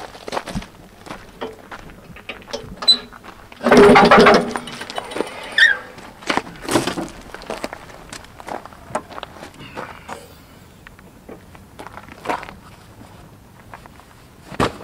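Footsteps on gravel and a run of clunks and rattles as a Jeep Wrangler's rear swing-out tailgate and spare-tire carrier are unlatched and swung open. The loudest part is a dense clatter about four seconds in, followed by smaller knocks.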